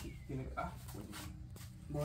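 A dog's short vocal sound in the first second, with a man's brief 'ah'.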